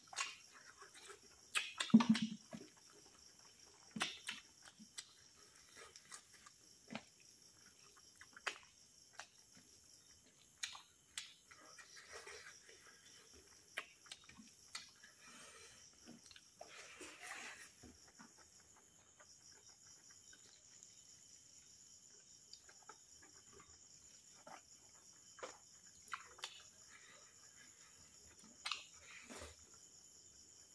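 Close-miked eating by hand: scattered short mouth smacks, chewing and soft clicks as rice and curry are mixed and eaten, the loudest about two seconds in. Crickets chirr steadily and high in the background throughout.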